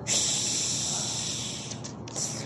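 A loud hiss that starts suddenly and fades away over about two seconds, from a cartoon soundtrack.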